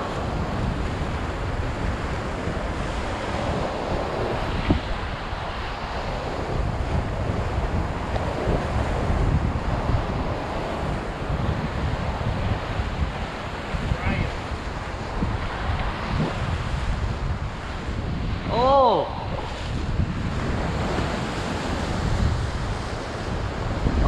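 Ocean surf breaking and washing against a rocky lava shoreline, with wind buffeting the microphone in a steady low rumble. A short voice sound breaks through briefly near the end.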